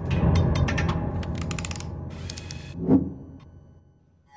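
Sound effects for an animated studio logo: a low rumble under a run of quick mechanical, ratchet-like clicks that speed up, a short hiss, then one loud hit with a ringing tone about three seconds in that fades away.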